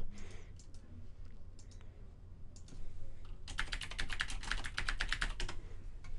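Typing on a computer keyboard: a few scattered clicks, then a quick run of keystrokes through the second half as a column header is entered in a spreadsheet.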